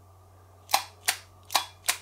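Small 24 V contactor clacking in and out four times, in two quick pairs, as its coil is switched on and off through the PLC output by pressing and releasing a push button.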